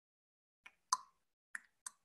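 Four short, faint clicks in otherwise near-quiet, the loudest about a second in with a brief ring.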